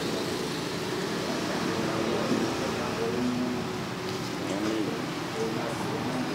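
Background chatter of several voices over a steady din, as in a busy noodle shop.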